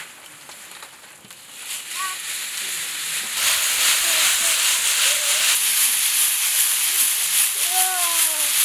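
Soybeans and dry chaff rattling and swishing in a woven bamboo winnowing basket: quieter scooping rustles at first, then from about three seconds in a loud, steady rustling hiss as the basket is shaken to sift the beans from the chaff.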